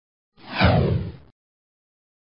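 Swoosh sound effect: a single whoosh about a second long that sweeps downward in pitch, with a low rumble under it.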